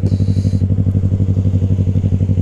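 Yamaha YZF-R3's parallel-twin engine idling steadily at the roadside, with an even, rapid pulse. A brief hiss comes near the start.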